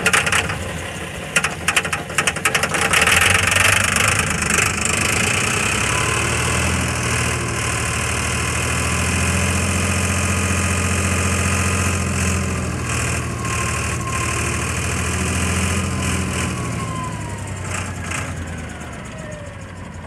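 Six-cylinder diesel engine of an old wheel loader running just after start-up, with a loud clatter for the first few seconds before it settles into a steady run. Its low note swells and eases twice as the loader's hydraulics work the bucket, with a faint whine gliding up and down above it.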